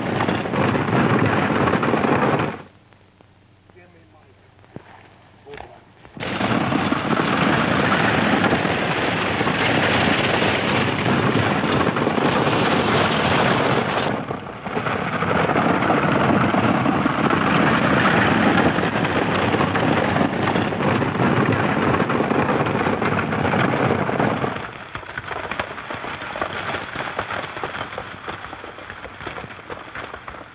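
Runaway stagecoach at full gallop: a dense rumble of hoofbeats from the team of horses and the coach's rattling wheels. It drops away sharply for about three seconds early on, dips briefly midway, and weakens and fades over the last five seconds.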